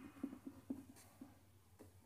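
Faint sound of a pen writing capital letters on paper: a quick run of short, soft strokes in the first second, thinning out after.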